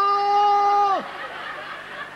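A man's loud, drawn-out shout of "pista!", held on one high pitch for about a second: the cry a skier gives to clear the slope. It is followed by faint audience laughter.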